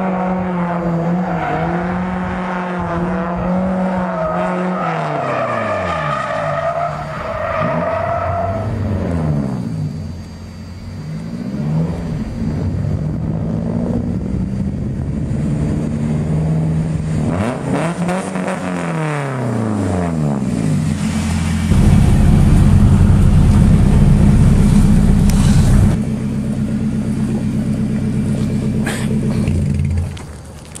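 Drift car's engine revving up and down over and over as the car is slid through a cone course, with a louder steady noise for about four seconds two-thirds of the way in.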